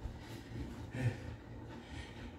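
Faint sounds of a man getting down onto a floor mat for push-ups, with a short soft sound of breath or body contact about a second in, over a low steady hum.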